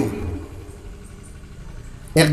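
A short pause in amplified speech: the voice's last word tails away over the first half second, leaving a steady low background rumble.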